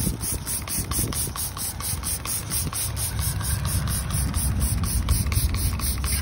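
Trigger spray bottle of Meguiar's Hot Rims wheel and tire cleaner being pumped rapidly onto a car wheel. It makes a fast run of short hissing squirts, about five a second.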